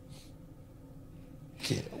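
A quiet gap of low background hiss with a faint short puff of breath-like noise just after the start, then a man's voice begins near the end.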